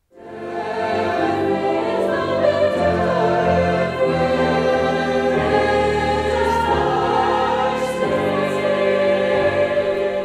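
Choral music: a choir singing slow, sustained chords, fading in at the start.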